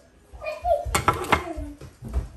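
A metal fork clinking against a frying pan, three sharp clicks close together about a second in, with a brief murmur of voice just before.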